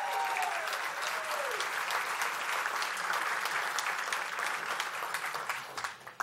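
Audience applauding, many people clapping at once; the applause dies away near the end.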